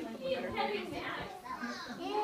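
Indistinct chatter of several overlapping voices, children's voices among them.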